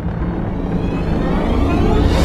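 Logo-intro music sting: a deep boom at the start, then a rising whoosh that grows steadily louder over a low rumble.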